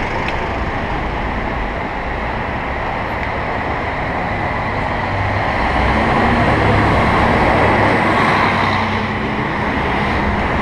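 Street traffic noise heard from a slow-moving bicycle in a narrow, congested city street, with a city bus engine running close alongside from about halfway through, adding a steady low hum.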